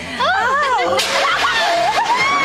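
Excited high voices whooping, their pitch rising and falling. About a second in comes a sudden rush of rustling leaves and stalks as people drop down into a stand of tall plants.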